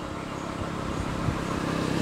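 A motor vehicle's engine approaching, its hum growing steadily louder.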